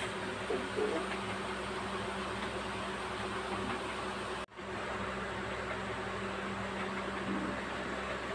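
Steady mechanical hum with an even hiss, like a room fan running, cutting out for an instant about halfway through.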